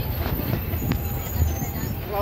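Moving bus heard from inside the passenger cabin: a steady low engine and road rumble, with a couple of sharp rattling clicks, one near the start and one about a second in.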